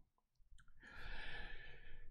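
A man breathing out in a long sigh, starting about a second in, after a couple of faint mouth clicks.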